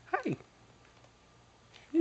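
A baby's short squeal that slides steeply down in pitch, just after the start.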